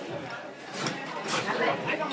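Bar spoon stirring ice in a stainless steel mixing tin, giving quick, light clinks and rattles of ice against metal, with indistinct voices in the background.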